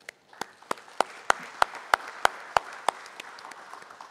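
An audience applauding, with one set of hands clapping close to the microphone in about ten sharp, evenly spaced claps, roughly three a second. The loud claps stop about three seconds in and the applause fades.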